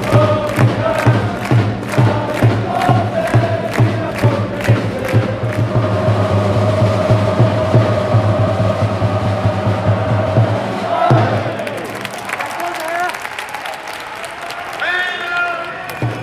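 Football supporters chanting together in the stands to a steady bass drum beating about twice a second. The drum and chant stop about eleven seconds in, leaving quieter crowd noise.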